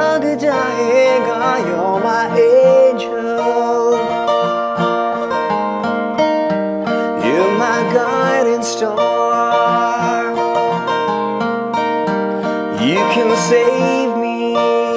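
Granada acoustic guitar played with a pick, with a capo on the neck, sounding a steady run of chords. A man's voice sings over it in phrases at the start, around the middle and near the end.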